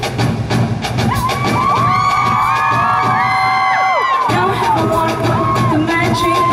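Live pop band music at an arena concert with a crowd of fans screaming and cheering over it. About two seconds in, the bass and drums drop out, leaving the high, wavering screams on their own, and the full band comes back in with a hit just past four seconds.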